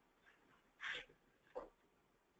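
Near silence in a pause of a webinar presenter's talk, broken by one short breath just before the middle and a faint mouth click a moment later.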